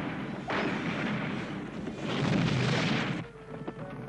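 Cartoon bazooka fire: a sharp blast about half a second in and another about two seconds in, each a long rushing noise, which stop abruptly a little after three seconds.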